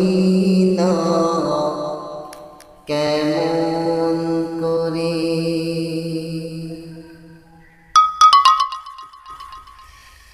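A man sings a Bengali naat into a handheld microphone, drawing out two long held notes with a slight waver in pitch. About eight seconds in comes a short, quick run of bright, bell-like notes.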